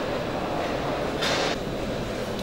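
Steady rumbling room noise of a large livestock sale hall, with a short burst of hiss about one and a quarter seconds in.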